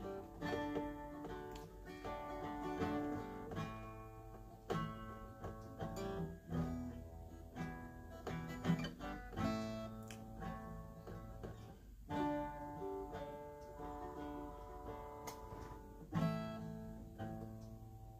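Acoustic guitar played quietly with picked notes and light strums, each note ringing and fading.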